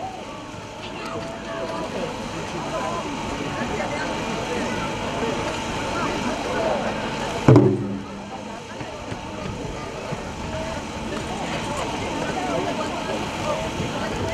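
One heavy stroke on a large barrel drum (taiko) about halfway through, with a short low ring, over a steady murmur of voices.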